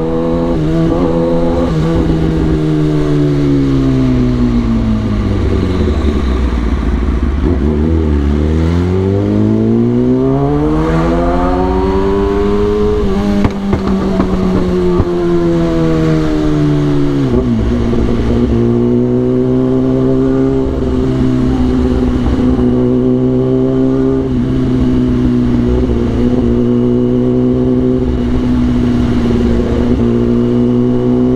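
Kawasaki ZX-10R's inline-four engine running, its roar falling away over the first several seconds, climbing again, then dropping off after a brief click about thirteen seconds in. Through the second half it holds a steady note.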